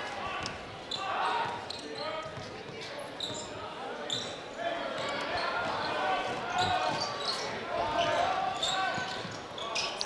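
Basketball dribbling on a hardwood gym floor, short bounces echoing in the hall, under a murmur of crowd and player voices.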